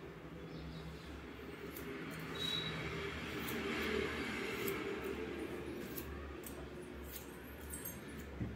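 Hairdressing scissors snipping the ends of long wet hair: a few faint, sharp snips at irregular intervals over a low steady hum.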